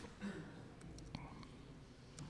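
A few faint, scattered keystrokes on a computer keyboard as numbers are typed in.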